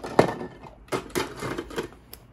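Hard plastic 3D-printed pieces clattering and knocking together as they are pushed into an already full clear plastic storage box. There is a sharp knock shortly after the start and another run of rattling about a second in.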